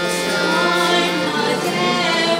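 Devotional song: voices singing over a steady held accompaniment note, which drops in pitch about a second and a half in.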